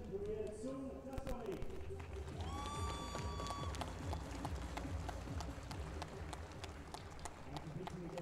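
Scattered clapping from a small crowd, irregular sharp claps that build after a public-address voice at the start, with one brief whistle about two and a half seconds in. A steady low wind rumble sits under it all.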